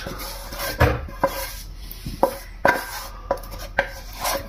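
A wooden spoon scraping sautéed onions out of a non-stick frying pan held over a steel pot, with about seven sharp, irregular knocks of spoon and pan against the cookware.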